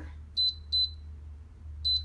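Air fryer's digital control panel beeping as its temperature button is pressed, stepping the setting down to 360 °F: three short high-pitched beeps, two close together early and one near the end.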